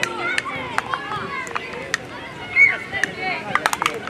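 Young players shouting and calling out on a football pitch, the loudest call about two and a half seconds in, with scattered sharp knocks and a quick run of them near the end.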